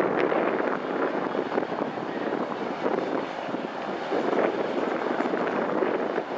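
A harbour cruise boat passing close at speed: a steady rushing drone of its engines and wash, swelling and easing, with wind noise on the microphone.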